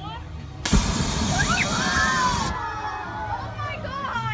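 A sudden loud burst of hiss, starting with a knock about half a second in and cutting off sharply about two seconds later, with children's high excited cries over it.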